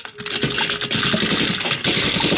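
Battery-powered Plarail toy train's small motor and plastic gears running, a fast rattling buzz that starts a fraction of a second in.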